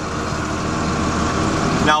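Tractor engine running steadily, heard from inside the cab while it pulls a planter across the field: an even drone with a low hum that grows slightly louder.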